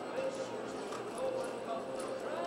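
Horse's hoofbeats at a walk in soft arena dirt, evenly spaced at about two a second, with people talking in the background.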